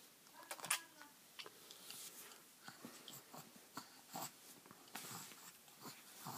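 Baby sucking on a pacifier: faint, irregular little clicks and smacks, a few each second.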